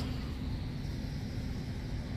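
Steady low hum of road traffic, even throughout, with no single vehicle standing out.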